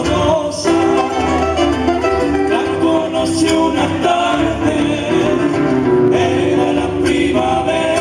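Live cueca cuyana played by a quartet of acoustic guitars strummed and picked together, with men's voices singing in harmony.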